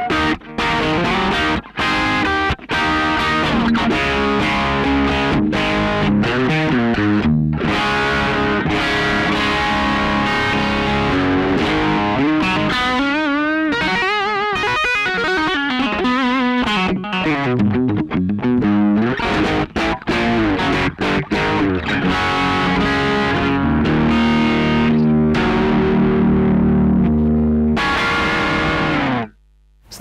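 Distorted electric guitar played through an Orange Guitar Butler two-channel JFET preamp pedal, heard direct from its emulated line out. Rock riffs with a few short stops in the first seconds, wavering, bending notes in the middle, and a held chord near the end that stops abruptly.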